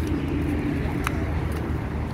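Steady low outdoor rumble of background noise on a handheld phone microphone, with a faint voice near the start and a single sharp click about a second in.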